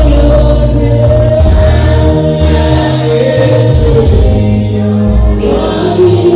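Gospel worship song: voices singing into microphones over an electronic keyboard, with a deep, moving bass line and a steady beat.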